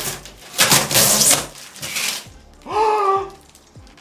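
Large cardboard box lowered against the wall, scraping the wall and tearing the wallpaper: a harsh rasping noise lasting just under a second, then a second, weaker one. A short pitched sound follows near the end.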